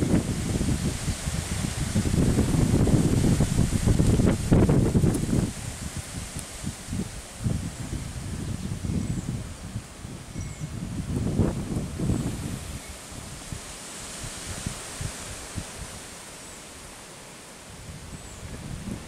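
Wind buffeting the microphone, heavy for the first five seconds or so, then lighter gusts with leaves rustling.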